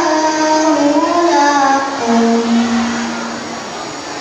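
A young boy's melodic Quran recitation (tilawah) into a microphone: long, gliding held notes that end on one long low held note about three and a half seconds in, followed by the hall's background hum.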